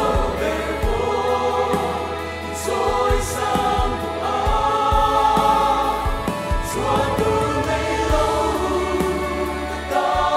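Mixed choir of men and women singing a hymn in harmony, holding sustained chords that change from phrase to phrase.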